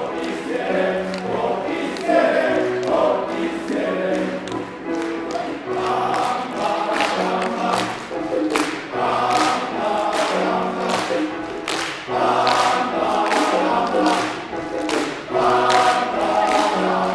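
Men's choir singing in parts with a piano and drum kit, sharp drum hits keeping a steady beat under the voices.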